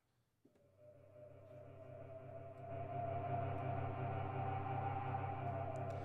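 Sustained synthesizer chord from a software synth in Propellerhead Reason, played through MainStage. It fades in about half a second in, swells over the next two seconds and then holds steady.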